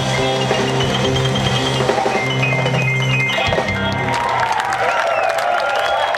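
Live band of electric and acoustic guitars, keyboards and drums playing the last notes of a song, which end about three and a half seconds in; the crowd then claps and cheers.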